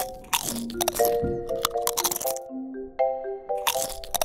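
Background music with a simple held-note melody, over a run of sharp crunches from an eastern grey kangaroo biting and chewing lettuce from a gloved hand.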